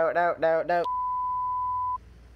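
A short vocal syllable repeated mechanically, about four times a second, as an edited-in looped sound effect. Just under a second in, it cuts to a steady 1 kHz beep tone of the censor-bleep kind, which holds for about a second and stops abruptly.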